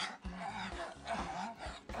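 A man grunting and moaning "uh, uh" in a string of short, breathy vocal bursts: mock sex noises during dry humping.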